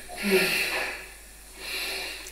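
A woman's heavy, breathy exhale with a brief voiced sigh, then a softer breath near the end; she is in early labour, between contractions.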